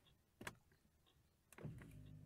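Faint single click of the ignition key being turned to the on position, followed about a second later by a faint steady low hum as the car's electrics switch on, with the engine not yet cranked.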